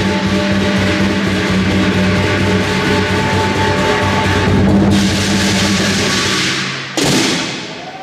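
Lion dance percussion ensemble of drum, cymbals and gong playing a fast, steady rhythm. Near the end it breaks off with one loud crash that rings and fades away.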